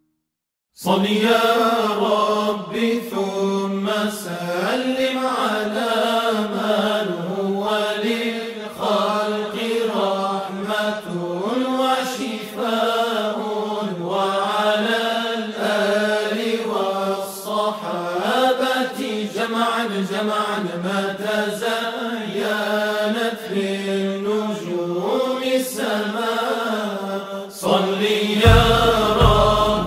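Male voice chanting a slow devotional melody in long, gliding sung phrases. It starts about a second in, after a brief silence between tracks.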